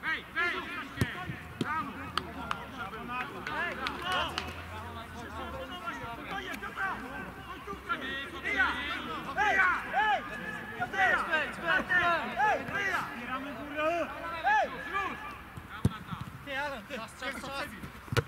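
Footballers' voices shouting and calling to one another across an outdoor pitch during play, many short calls overlapping and busiest in the middle, with a few sharp knocks.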